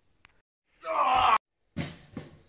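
A boy's loud, pitched groan lasting about half a second, cut off abruptly, followed near the end by another short loud burst.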